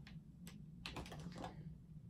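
Light clicks and clatter of small makeup items being handled and picked through, with a quick cluster of clicks about a second in, over a low steady hum.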